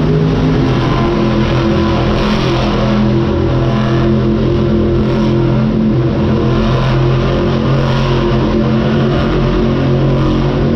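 Monster truck engines, supercharged big-block V8s, running loud with several trucks at once. The engine note steps up and down in pitch as the trucks are throttled on the arena floor.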